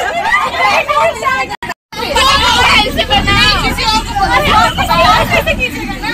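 Many young women talking over each other inside a bus. After a brief dropout about two seconds in, the low rumble of the bus engine runs beneath the chatter.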